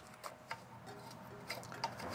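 Faint, scattered light clicks of metal being handled as a hand takes hold of the wing nut that fastens a car trailer's removable fender.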